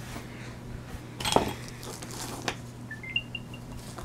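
Light clicks and taps of an Apple AirTag and iPhone being handled on a plastic-covered table, the loudest about a second and a half in. Near the end comes a faint, short electronic chime of high beeps that step upward and then repeat.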